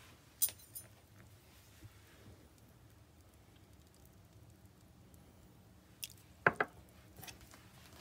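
Mostly quiet, with a few light clicks and clinks from a metal teaspoon and a small glass vanilla extract bottle as a teaspoon of vanilla is measured out and tipped into a plastic measuring jug. The clicks come about half a second in and again near the end.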